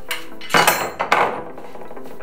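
Steel pry bars set down on a desktop: several sharp metallic clanks with a short ringing after them, bunched about half a second to just past a second in.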